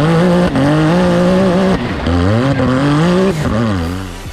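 Can-Am Maverick X3's turbocharged three-cylinder engine revving hard under full throttle. Its pitch climbs and then drops sharply three times: briefly about half a second in, again near two seconds, and near the end.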